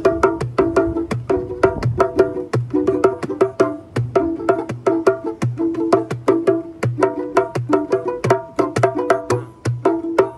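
Gourd-bodied banjo played in a fast, even plucked pattern, with a hand drum keeping a steady low beat underneath.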